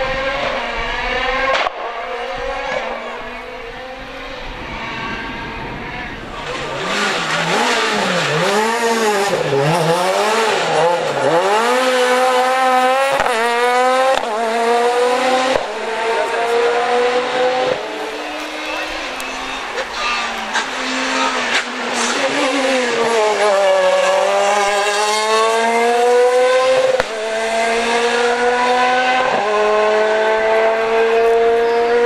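Ford Fiesta S2000 rally car's two-litre four-cylinder engine revving hard at full throttle, the note climbing with each gear and dropping sharply between shifts and on lifts into corners, in several short passes cut together.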